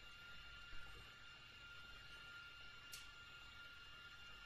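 Near silence: room tone with a faint, steady high-pitched whine and one faint click about three seconds in.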